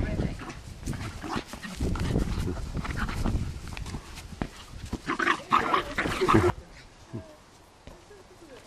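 Jack Russell terrier vocalising as it chases and noses a soccer ball across grass. The sound is loudest a little past the middle and cuts off suddenly about six and a half seconds in.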